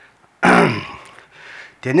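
A man clears his throat once, loudly, into a microphone about half a second in, before speaking again near the end.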